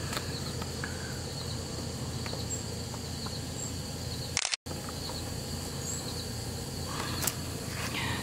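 Steady chirring of insects such as crickets over a low outdoor background. The sound drops out for an instant about four and a half seconds in, at an edit cut.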